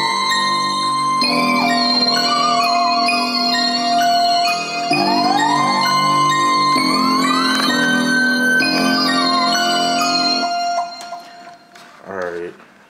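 Synthesized beat playback without drums: a whistle lead synth with sliding pitch glides and a wavering vibrato, layered over an organ patch. The music stops about ten and a half seconds in.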